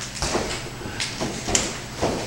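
A few light knocks and scuffs from wrestlers grappling in a ring, feet and bodies on the ring mat, the clearest about a second and a half in, in a large echoing hall.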